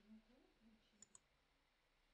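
Near silence, with two faint, sharp clicks in quick succession about a second in.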